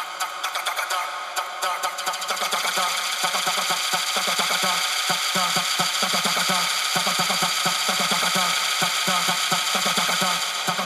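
Tech house DJ mix in a breakdown with the bass cut out: a fast, steady pulse of short hits over high held tones.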